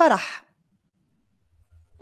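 A woman's voice says a short name that falls in pitch and trails off breathily. It is followed by about a second and a half of near silence.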